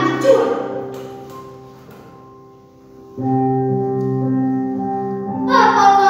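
Background music of long held chords accompanying a girl reciting a poem. Her voice stops about a second in, the music fades to quiet, a new chord comes in about three seconds in, and her voice returns near the end.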